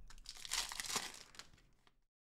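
Foil wrapper of an Upper Deck Credentials hockey card pack being torn open and crinkled by hand, a rustling crackle that fades out toward the end.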